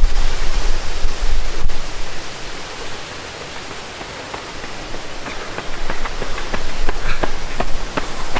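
Running footsteps on a gravel lane, about three a second, growing louder as the runner comes closer. Under them is a steady hiss, with a low rumble of wind on the microphone in the first two seconds.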